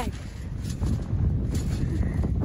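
Wind rumbling on a phone's microphone, with low handling rumble as the phone moves about on a trampoline being bounced on.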